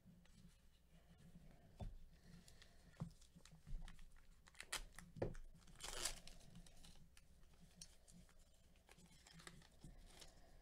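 Faint handling of trading cards: a few light clicks and taps, then a short crinkling tear about six seconds in as a card pack wrapper is torn open.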